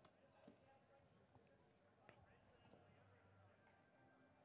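Near silence: a faint background hiss with a few soft clicks.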